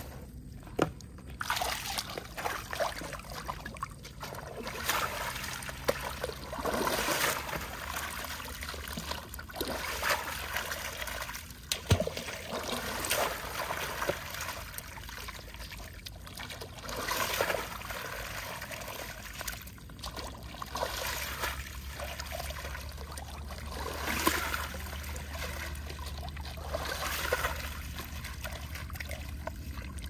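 Water sloshing, trickling and splashing in irregular swells every few seconds as a gold pan of sediment is dipped and swirled in shallow muddy water to wash it.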